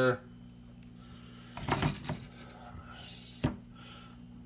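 Quiet handling of a stuffed moose heart as fingers work a stainless pin through its flaps, with one sharp click about three and a half seconds in.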